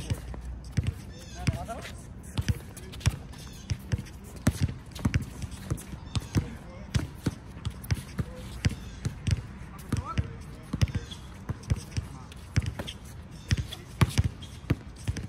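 Basketball dribbled on an outdoor hard court: many sharp bounces at an uneven pace throughout, with short pauses as the ball is passed or held.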